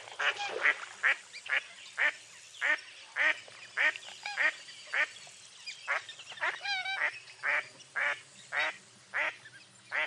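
Mottled duck quacking in a steady, evenly spaced series of short quacks, about two a second. About seven seconds in there is one brief wavering call with several pitches.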